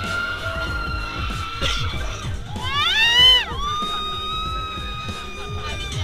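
Amusement-ride riders screaming: long held screams, with one loud scream about halfway through that rises and falls in pitch, over background music with a low beat.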